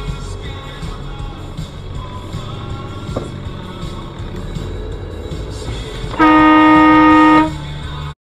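A car horn sounds once near the end, a single steady blast lasting just over a second, at a car cutting in across a solid white lane line. Low cabin and road rumble from a car in slow traffic runs underneath.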